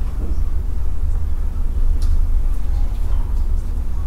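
A steady low rumble of room background noise, with a faint click about two seconds in.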